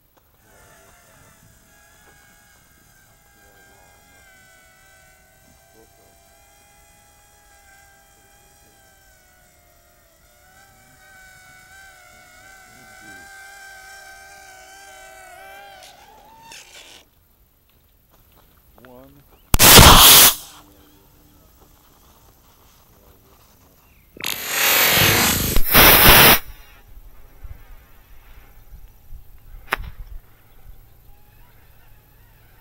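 Quadcopter electric motors and propellers whining steadily with a wavering pitch, rising a little before cutting off about sixteen seconds in. Later a sudden, very loud burst of noise under a second long, then a few seconds on a loud rush of about two seconds from a model rocket motor firing at launch.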